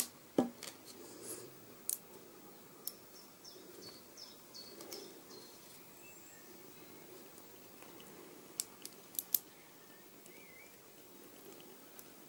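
Small neodymium magnet balls clicking as clusters are snapped onto a magnet-ball solid: a few sharp single clicks early on, then four quick clicks in a row a little after the middle.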